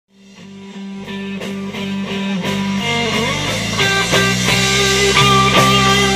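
Live electric blues-rock band, electric guitar with bass and drums, playing an instrumental intro. It fades in from silence and grows louder over the first few seconds into the full band.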